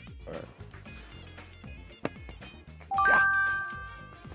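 A quick three-note rising chime sound effect, ringing out about three seconds in and held for about a second, over steady background music. A sharp click comes a second earlier.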